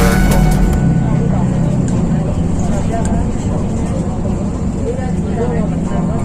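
Background music cuts off under a second in, leaving street ambience: a steady traffic rumble with indistinct voices.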